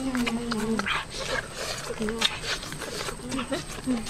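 Wordless vocal sounds from boys eating: one held, hum-like note for about a second, then short grunts. Many small mouth clicks and smacks from chewing run through it.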